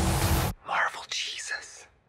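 Trailer music cuts off abruptly about half a second in, then a man speaks a short line in a whisper.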